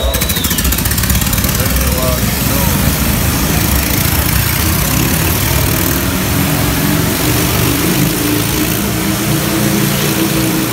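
Stunt motorcycle engines running loudly and steadily inside the wooden drum of a Wall of Death, as the riders get ready to ride the wall.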